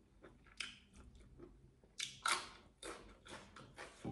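A person chewing a mouthful of food, close to the microphone: a series of short, separate chewing noises, the loudest about two seconds in.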